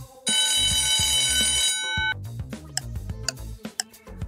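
Alarm-clock ring sound effect going off for about a second and a half as the quiz countdown timer runs out, signalling time up. Background music with a ticking beat comes back after it.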